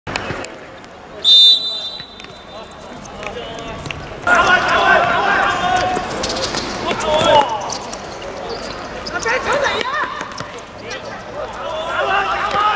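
A referee's whistle gives one short, loud blast about a second in, the signal for kickoff. Then players shout to each other over ball kicks and footsteps on the hard court.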